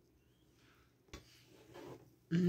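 Near silence, broken by one faint click about halfway through and, near the end, faint rubbing of hands on the fabric of wrapped plush toys.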